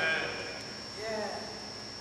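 A short pause in a man's speech: the tail of a word at the very start, then a faint, brief wavering voice sound about a second in. A thin steady high-pitched whine runs underneath.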